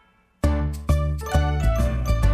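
Children's song music: after a brief near-silent gap, a new tune starts about half a second in, with bright chiming notes over a steady bass beat.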